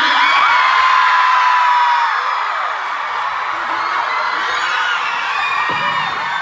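Large concert audience screaming and cheering, with many high-pitched screams over steady crowd noise and one long held scream about half a second in.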